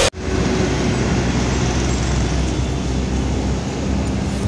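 Steady road traffic noise with a low rumble.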